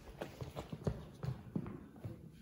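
Footsteps on a hardwood gym floor: a quick, irregular string of knocks and taps.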